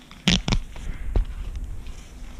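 Handling noise on the camera's microphone: a few knocks and a low rumbling rub as the camera is jostled, with the loudest knock about a second in.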